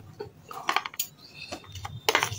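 A metal spoon clinking and scraping against a stainless steel bowl of thick paste, in several short, sharp clicks.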